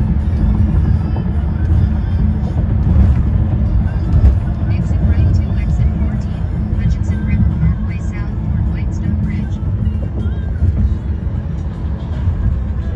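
Car cabin noise on the highway: a loud, steady low rumble, with music and indistinct voices mixed in.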